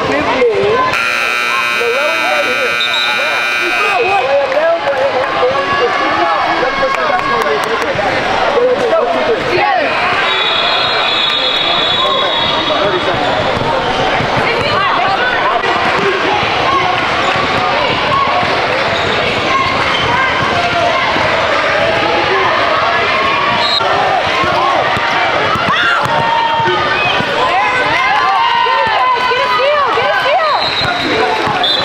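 A gym scoreboard buzzer sounds for about three seconds near the start, ending a timeout. Then basketball game play follows: the ball bouncing on the hardwood court amid players' and spectators' voices in a reverberant gym.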